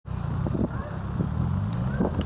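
A car engine idling with a steady low hum, and a few faint knocks.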